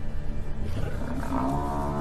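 Lions growling as they feed on a downed Cape buffalo, and about a second in the buffalo starts a long, drawn-out bellow, over background music.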